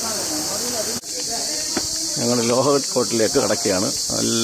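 A steady, high-pitched chorus of insects calling from the trees, with a man's voice talking over it in the second half.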